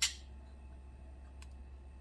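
A small wire whisk clinks once against a glass bowl of cornstarch slurry, with a fainter tick about a second and a half later, over a low steady hum.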